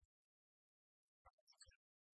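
Near silence, broken by a few faint, brief sounds about a second and a quarter in.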